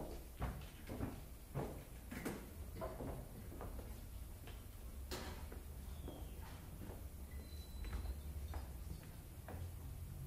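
Footsteps and stage gear being handled: irregular clicks and knocks, bunched in the first few seconds, over a low steady hum.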